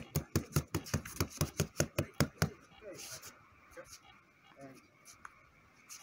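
Rapid punches landing on a handheld strike pad, about five even blows a second, that stop about two and a half seconds in.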